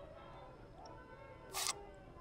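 A quiet pause with faint background music, broken by one short hiss lasting about a quarter of a second, about one and a half seconds in.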